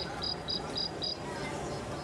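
Rapid cricket-like chirping, high-pitched and evenly spaced at about four short chirps a second, dying away a little over a second in, over a steady murmur of background noise.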